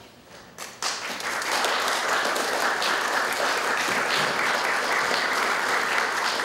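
Audience applause that breaks out suddenly about a second in and carries on steadily: many hands clapping together.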